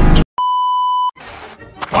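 Loud bass-heavy music cuts off abruptly, and after a moment's silence a single steady electronic beep sounds for about three-quarters of a second, followed by faint noise.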